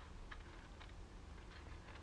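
Scissors cutting through thin cardboard: several faint, separate snips.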